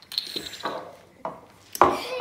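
Drinking glasses knocking and being set down on a tabletop: a few separate knocks, one with a short ring near the start, and the loudest near the end.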